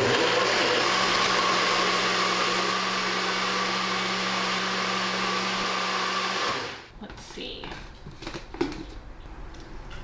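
Single-serve personal blender running steadily for about six and a half seconds as it blends a smoothie of frozen fruit and spinach, then switching off. A few light clicks and knocks follow as the cup is handled.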